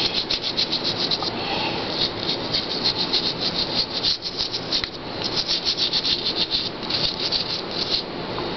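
Toothbrush bristles scrubbing a denture in quick up-and-down strokes, several strokes a second, easing off briefly about four seconds in.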